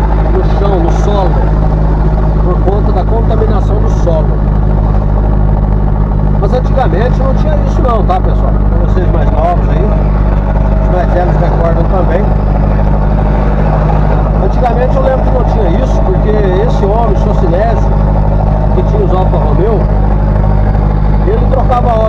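Steady drone of a truck's engine heard inside the cab while cruising, with a man's voice talking over it.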